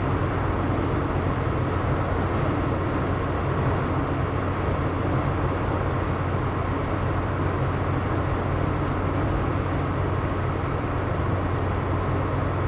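Road noise heard from inside a car's cabin at highway speed: a steady rumble of tyres on pavement with a low, even drone underneath.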